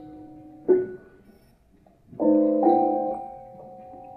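Prepared grand piano, with bolts, screws and rubber set between its strings, played slowly. About a second in comes a sharp, quickly damped note; a little after two seconds, two chords sound close together and are left to ring and fade.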